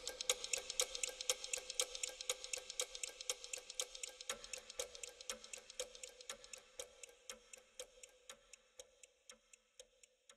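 Clock ticking, about four ticks a second, fading out gradually. The tail of the music dies away under it in the first few seconds, leaving a faint held tone.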